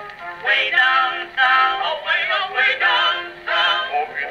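Edison Blue Amberol cylinder record played acoustically on an Edison cabinet phonograph: a male vocal group singing in harmony, in short phrases. The sound is thin, with no high treble, typical of an early acoustic recording.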